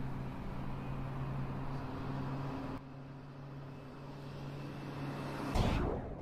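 A steady low drone with a hiss, dropping in level about three seconds in, then swelling briefly and loudly near the end before fading away.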